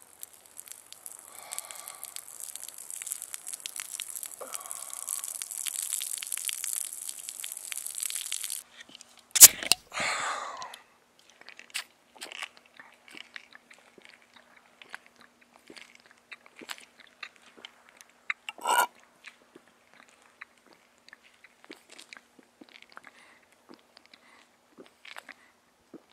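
Close-up sounds of a glass beer bottle being opened and drunk from: a crackling hiss for the first eight or nine seconds that cuts off suddenly, then a sharp clink. After that come scattered small clicks and gulps of swallowing from the bottle.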